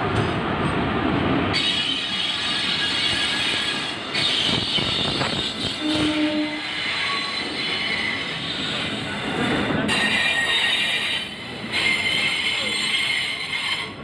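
Passenger coaches of an arriving express train rolling past at slowing speed, wheels rumbling on the rails, with a high squeal from the wheels and brakes that starts about a second and a half in and comes and goes as the train slows for its stop.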